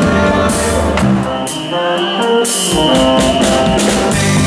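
Live band playing an upbeat groove: drum kit with cymbals, electric bass and percussion. The bass and low end drop out for about a second midway, then the full band comes back in.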